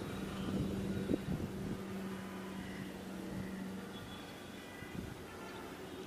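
Propeller aircraft flying overhead, its engine a steady drone that fades out after about four seconds. A few low bumps hit the microphone about a second in.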